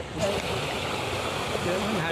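Steady rush of fast-flowing water churning into the river, stored water let out to drive fish into a net.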